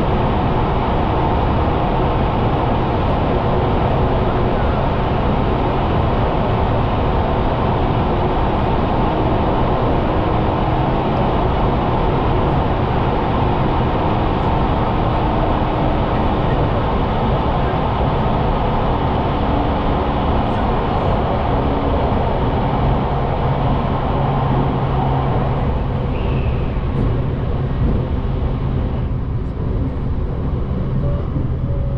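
Steady running noise of an electric passenger train heard from inside the carriage, rolling through a tunnel. The sound thins out about a second before the end as the train comes out into the open.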